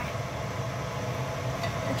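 Steady low hum under an even hiss, with no distinct knocks or scrapes.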